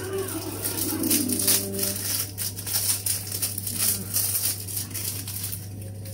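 Plastic wrapping around a pack of baking chocolate crinkling in irregular crackles as it is handled and opened.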